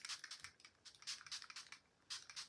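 Makeup setting spray from a pump mist bottle sprayed at the face in a quick run of short, faint, hissing spritzes.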